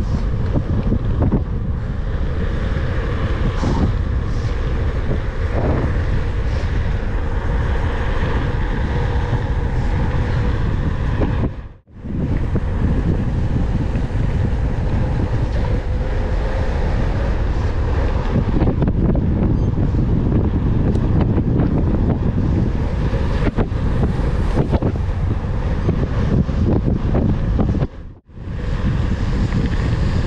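Wind rushing over the microphone of a bike-mounted action camera while riding a mountain bike fast on asphalt, with tyre rumble underneath. The sound cuts out briefly twice.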